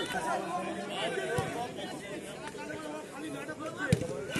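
Overlapping chatter and calls of spectators and players at a football match. A sharp thud near the end, the loudest sound, comes from the ball being kicked, with a fainter knock earlier.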